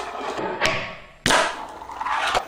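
Fingerboard doing tricks: a light clack about two thirds of a second in, then a loud, sharp clack of the little board striking down just past a second, with the rough rolling of its small wheels around them.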